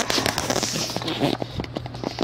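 Scotch ATG adhesive transfer tape gun drawn across paper, a dry crackling as the tape is laid down, with a short laugh near the end.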